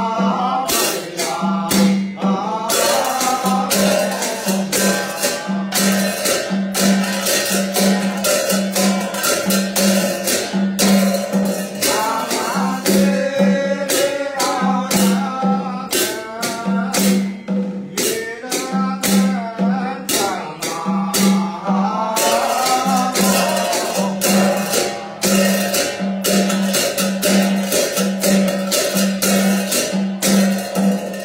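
Ritual chanting with a shaken rattle jingling in a steady rhythm over a low note that pulses on the beat.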